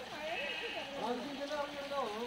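Human voices talking, with drawn-out, wavering tones.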